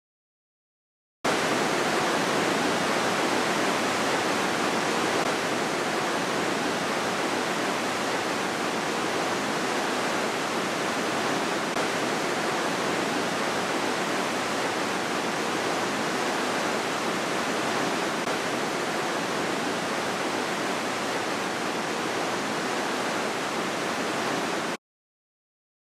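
The Aare river rushing through its rock gorge: a steady, even rush of water that cuts in abruptly about a second in after silence.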